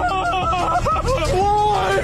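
A man wailing and yelling in a high, strained voice. Near the end he holds a long drawn-out cry of "why?!".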